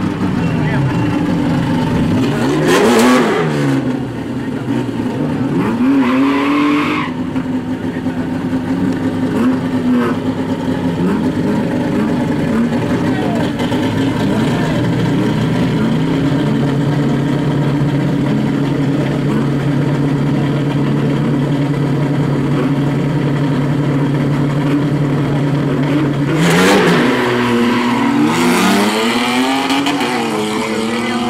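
Two drag-race cars, a Chevrolet Chevy and a BMW sedan, idling at the start line with a steady engine drone. They rev hard a couple of times in the first seven seconds. In the last few seconds both engines rev up and launch, rising in pitch as the cars pull away.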